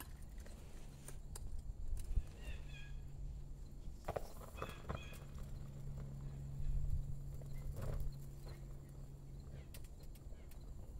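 Molten aluminium poured from a crucible held in steel tongs into a lost-foam mold in sand, with the foam pattern burning off in flames: scattered light clinks and knocks over a low steady hum that briefly drops out about four seconds in.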